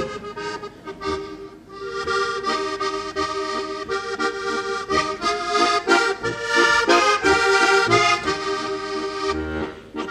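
Heligónka, a diatonic button accordion, playing the instrumental introduction of a Slovak folk song: a melody over held chords with a regular bass beat. It starts thinly and grows fuller and louder from about two seconds in.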